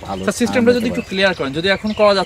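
A man speaking in Bengali, talking on without a break.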